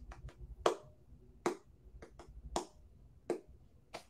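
Irregular sharp clicks at a computer, about ten in four seconds with five louder ones, as the next video is searched for; a faint low hum lies under them.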